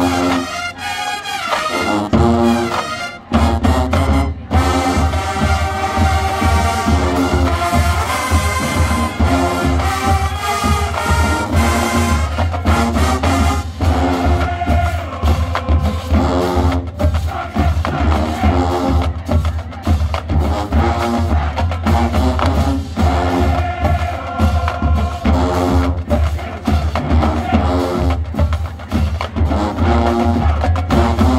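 Full marching band playing a brass-and-drums arrangement of a funk tune. About three seconds in, a low brass bass riff comes in and pulses steadily under the horn lines and drums.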